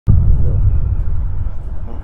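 Loud low rumble of city street noise. It starts abruptly just after the start and slowly eases off.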